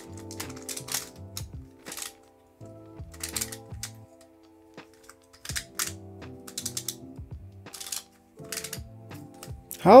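Irregular clicks of hard plastic puzzle pieces as a ghost Pyraminx is twisted by hand, over background music.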